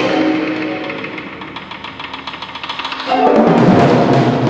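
A set of tom-toms played in a contemporary percussion piece. The drumming drops to a quieter rapid roll of fast strokes, then comes back loud and sudden about three seconds in.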